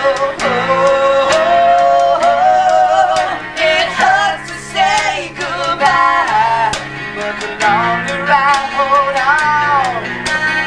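Live rock band playing on acoustic guitars and drums: a lead melody of long, bending notes with vibrato over steady chords, with frequent drum and cymbal hits.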